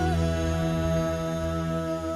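Live band music in which the lead singer holds one long sung note, wavering slightly at the start and then steady, over a steady bass line.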